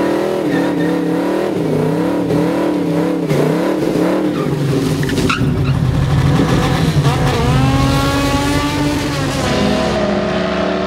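Classic muscle car's engine revving up and down, about once a second, during a smoky burnout, with tyre squeal under it. In the second half the engine pitch climbs in one long rise.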